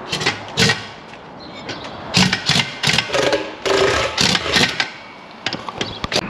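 Impact wrench working the wheel nuts of a tractor wheel, in several short bursts and one longer run in the middle.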